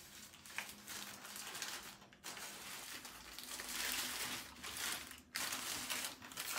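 Paper burger wrapper crinkling and rustling as it is unwrapped by hand, in several bursts with short pauses about two and five seconds in.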